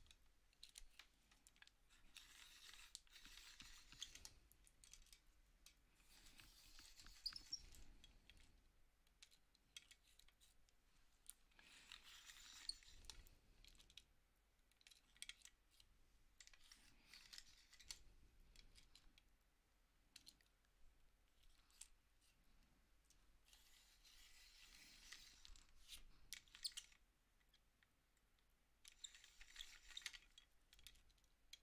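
Faint, intermittent scraping in bursts of a few seconds, with small clicks between them: a colored pencil being sharpened in a quiet handheld sharpener, the tip prone to breaking.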